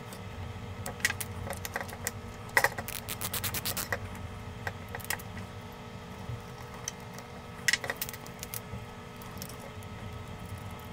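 Small metal parts of a Mamiya Six Automat camera being handled and a small screwdriver set to its top-plate screws. The sound is light scattered clicks and taps, with a quick run of rapid clicks a few seconds in and a shorter cluster near the end.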